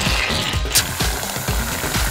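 Aerosol can of foaming soap spraying with a hiss that cuts off under a second in, over background music with a steady beat.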